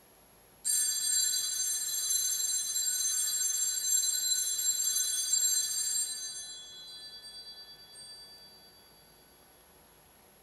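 Altar bells rung at the elevation of the consecrated host: a sudden bright ringing of several bells, held for about five seconds, then dying away over the next three.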